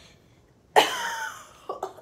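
A girl coughing: one loud cough a little under a second in, then two short, quieter coughs near the end.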